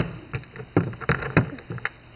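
A few light knocks and clicks as the two cast-metal halves of a Ford F-100 mechanical fuel pump are handled and set down on a wooden workbench.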